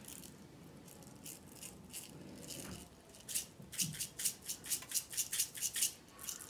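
Sprinkles rattling in a plastic shaker container as it is shaken over a frosted cake. The shakes are faint at first, then come loud and quick from about three seconds in, about four to five a second.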